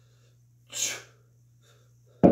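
A single short, forceful exhale of effort through the lips, a brief hiss of breath about a second in, on a kettlebell row rep.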